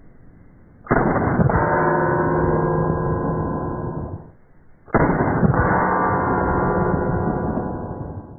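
Two .22 LR revolver shots about four seconds apart, each followed by steel targets ringing with a long tone that dies away over about three seconds. The sound is dull, with no high end.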